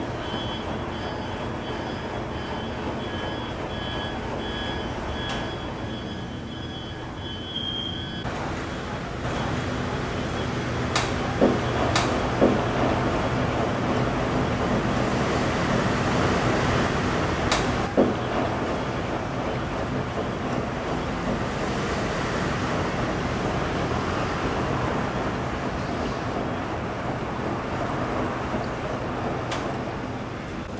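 Coin-operated front-loading washing machine running, a steady rumble of its drum churning water and laundry. About eight seconds in it grows louder and fuller, with a few sharp knocks in the middle.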